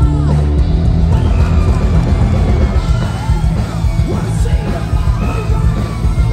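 Heavy metal band playing live, loud and continuous, with a dense, heavy low end.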